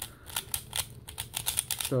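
Layers of a magnetic 3x3 speedcube (Valk M) being turned by hand: a quick, irregular run of sharp plastic clicks.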